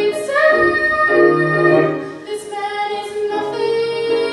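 A young woman sings a musical-theatre song solo, holding and bending sung notes, accompanied by grand piano.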